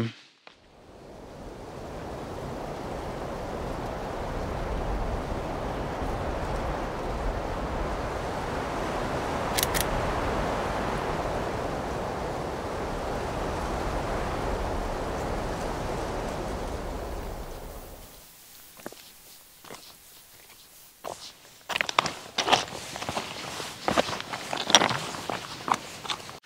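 A steady rushing noise swells in, holds, and fades out about two-thirds of the way through. After it, footsteps on stony ground, with scattered knocks and scuffs.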